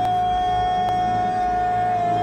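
A man's long yell held on one high, steady pitch.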